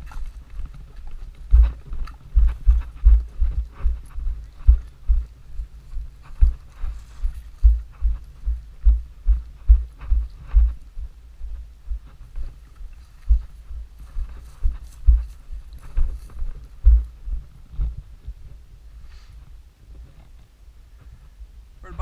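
Running footfalls picked up through a head-mounted camera: a steady run of dull low thumps, about two to three a second, with brush and dry vegetation rustling. The steps slow and fade out in the last few seconds.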